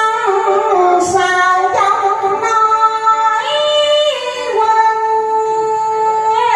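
A woman sings a Vietnamese đờn ca tài tử melody into a microphone, holding long notes and sliding from one pitch to the next. Plucked guitar and moon lute accompany her faintly.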